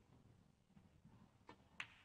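Snooker shot over near silence: a faint tap about one and a half seconds in, then a sharp click of balls colliding just before the end.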